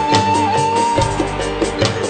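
Live band music: a bamboo flute (suling) holds a long high note with small bends over bass notes, guitar and a steady drum beat. The flute note ends about halfway through.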